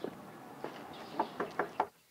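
Two footsteps, then four quick knocks on a wooden front door, about five a second, near the end.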